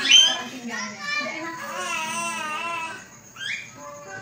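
Javan myna calling: a run of varied, voice-like squawks and warbling whistles, loudest at the start, with a quick rising whistle near the end.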